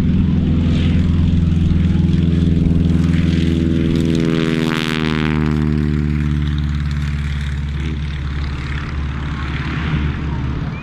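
Stinson Reliant's nine-cylinder Lycoming radial engine and propeller at take-off power as the aircraft runs past and lifts off. The loud, steady engine note drops in pitch as it goes by about halfway through, then eases a little as it climbs away.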